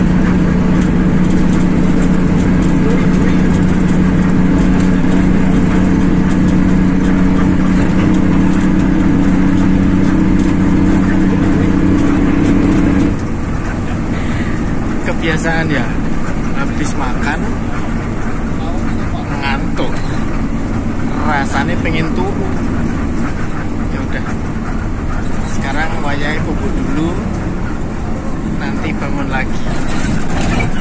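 Coach bus cruising at steady speed, heard inside the passenger cabin: a loud, even engine and road drone with a steady low hum. About 13 seconds in it drops suddenly to a quieter cabin rumble.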